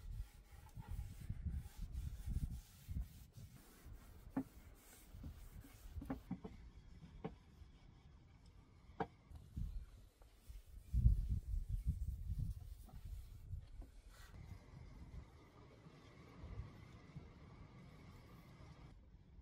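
Damp cloth wiping sanding dust off a painted wooden tabletop: faint, irregular rubbing strokes with a few light taps, louder for a couple of seconds about eleven seconds in.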